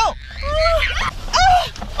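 Short, high-pitched frightened cries from people inside a moving car, a few separate calls that rise and fall in pitch, over the low steady hum of the car.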